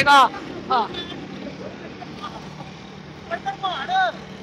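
Steady low drone of a vehicle in motion, with engine hum and road noise heard from on board. A man's voice is heard briefly at the start and again near the end.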